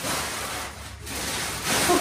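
Plastic contour gauge's pins sliding and rattling against each other in two rushes, the second longer.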